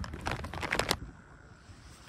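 Rapid clicks and rustling of a phone camera being handled and rubbed against a jacket close to the microphone, cutting off suddenly about a second in to faint outdoor background.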